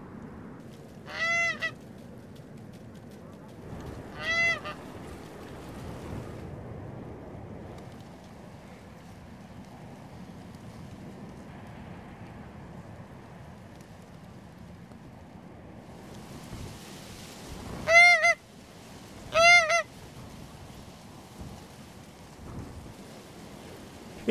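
Hand-held wooden goose call blown in short honks to lure incoming geese: two honks about three seconds apart, then after a long pause two louder honks about a second and a half apart, over a faint steady outdoor hiss.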